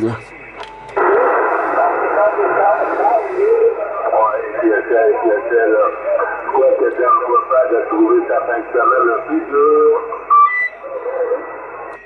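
A distant station's voice received on upper sideband over 27 MHz CB, coming through the Yaesu FT-450 transceiver's speaker with a thin, narrow telephone-like sound over band noise. The transmission stops about ten seconds in, leaving a faint steady whistle on the frequency.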